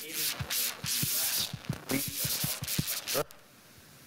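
Clothing rubbing and scraping against a clip-on microphone in short bursts, with many dull knocks, over a man's voice as he lectures.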